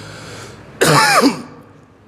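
A man clearing his throat once into a close microphone, a short, loud burst about a second in.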